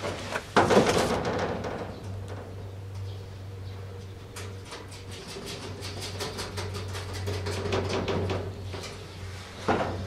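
Metal clicks, scrapes and rattles of hands working at the latch and hasp of a sheet-steel storeroom door: a loud clatter about a second in, a run of quick clicks in the middle, and another sharp knock near the end.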